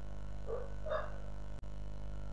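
Steady low electrical hum on the recording, with two faint short calls about half a second apart, about half a second and one second in.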